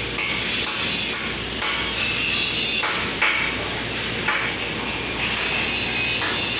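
Repeated light metal-on-steel strikes, each a sharp ringing ping. They come about twice a second at first, then more sparsely, over steady fan noise.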